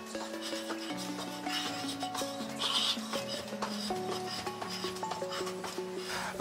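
Background pop music with a steady beat and held melody notes that change every second or so.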